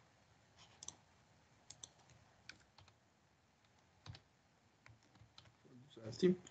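Faint, scattered clicks of computer keyboard keys, a handful of separate presses spread over a few seconds.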